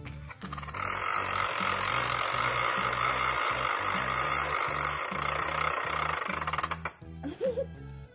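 BeanBoozled plastic spinner wheel being spun: a fast run of clicks from its pointer that stops suddenly about seven seconds in, over background music with a steady bass line.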